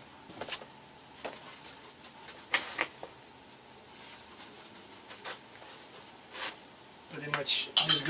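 A few scattered knocks and light metallic clinks as metal pipe parts are picked up and handled. A man starts speaking near the end.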